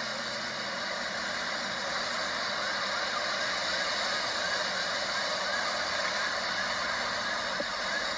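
Steady outdoor background noise from a parked car's open window, heard through a phone's small speaker, thin and without bass; no gunshots stand out.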